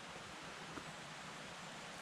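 Faint steady outdoor background noise, an even hiss with no distinct events.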